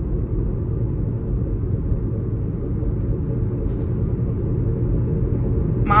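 Steady low rumble of a running car heard from inside the cabin.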